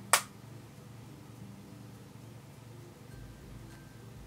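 A single sharp click just after the start, then only a faint steady background.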